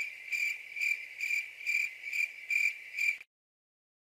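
Stock crickets sound effect: crickets chirping in an even rhythm, about two chirps a second, cutting off suddenly a little past three seconds in.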